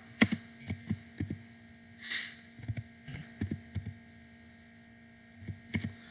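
Computer keyboard being typed on: irregular short key clicks in small clusters, over a steady low electrical hum.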